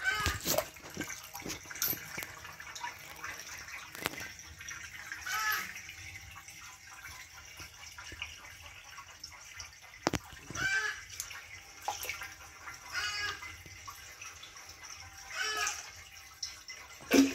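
Water gently moving and trickling in a shallow concrete fish tank, with a few sharp clicks and knocks along the way.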